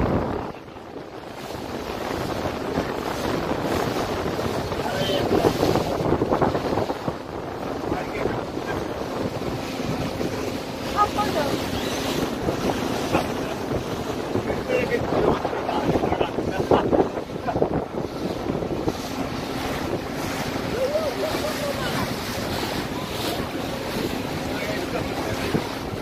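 Wind buffeting the microphone over rushing water and a faint steady low hum, with faint voices now and then.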